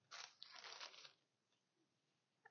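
Near silence with faint, brief crinkling and rustling of the costume kit's packaging and items being handled during the first second.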